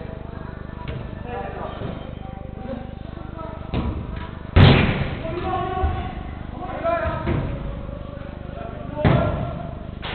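Indoor small-sided football: a loud, sharp ball impact with a short echo about four and a half seconds in, a smaller thud just before it and another near the end, over players' shouts.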